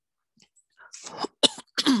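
A person clearing their throat: a few short, rough coughs starting about a second in.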